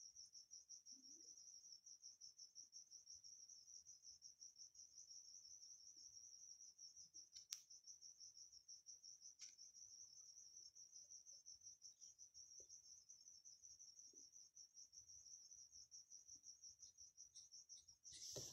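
Faint cricket trilling: a steady, rapidly pulsing high-pitched chirp that goes on without a break. Two faint clicks come about seven and a half and nine and a half seconds in.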